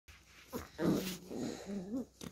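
Beagle puppies growling and whining in play while mouthing a hand: two short pitched vocalizations, the second rising in pitch near the end.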